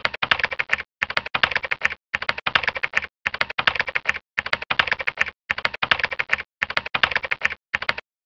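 Rapid computer-keyboard typing sound effect, the keystrokes in bursts of about a second with short breaks between, matching on-screen text being typed out letter by letter.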